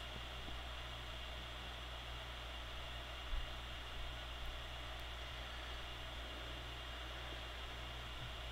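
Quiet steady hiss with a low hum under it, the recording's background noise, with two or three faint soft bumps around three to four and a half seconds in.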